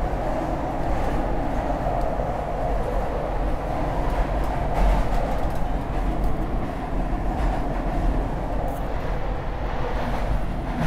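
Market-Frankford Line subway train in motion, heard from inside the car: a loud, steady rumble of wheels on rail.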